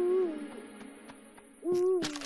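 Owl hooting twice, as a cartoon sound effect. There is one short hoot at the start and another about a second and a half later.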